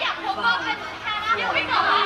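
Young women's voices talking and exclaiming over crowd chatter.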